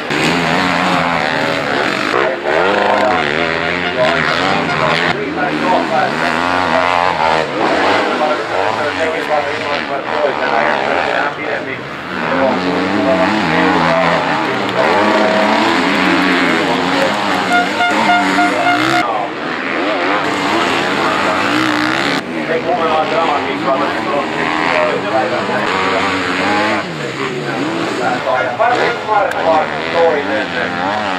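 Enduro motorcycle engines revving hard, their pitch rising and falling again and again as the throttle opens and closes, with more than one bike heard at once.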